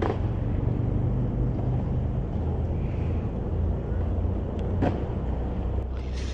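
Steady low outdoor rumble, with a sharp click at the start and another brief knock about five seconds in.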